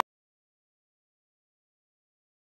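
Complete silence: the audio drops out abruptly at the start and nothing is heard.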